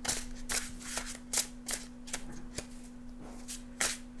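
A deck of tarot cards being shuffled by hand: an irregular run of about a dozen crisp card snaps and flicks.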